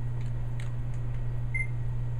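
A steady low hum runs throughout, with a few faint clicks and one short, high beep about one and a half seconds in.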